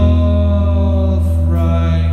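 A live rock band playing a slow song: a man singing long held notes over a steady, heavy bass and electric guitar.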